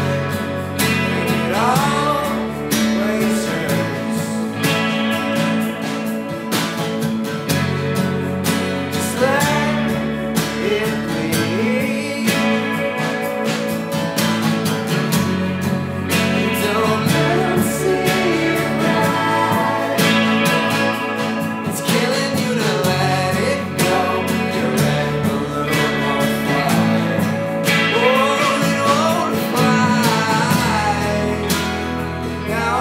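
Indie rock band playing live: strummed acoustic guitar, electric guitars, bass and drums, with a sung vocal line rising and falling over the top.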